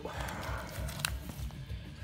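Cardboard LP sleeves rubbing and rustling as a record is pulled out of a tightly packed shelf, with a sharp click about a second in. Background music with a steady low beat plays throughout.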